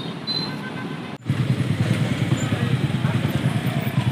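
A motorcycle engine running close by, coming in suddenly about a second in as a low, pulsing rumble.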